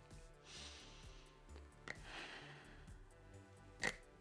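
A person sniffing twice through the nose to smell a product, about half a second and two seconds in, over soft background music. A sharp click comes near the end.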